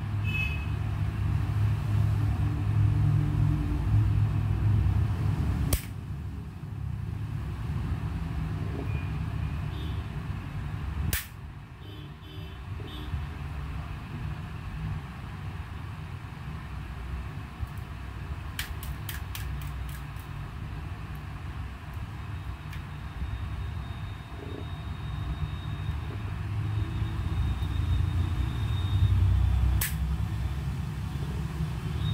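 A steady low rumble, with a few single sharp clicks about six and eleven seconds in, a quick run of clicks around twenty seconds, and another click at the very end.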